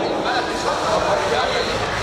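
Indistinct voices and crowd chatter, with no clear single speaker.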